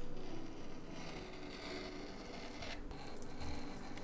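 Rotary cutter rolling through linen fabric against a cutting mat: a soft, steady scraping as the blade follows the pattern's edge.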